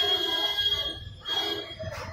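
A bell ringing with a high, steady tone, breaking off about a second in and ringing again briefly before stopping near the end.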